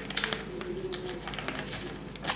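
Sheet of paper being folded and creased by hand: short crisp rustles and crackles, most of them in the first half-second. A low bird call sounds behind it.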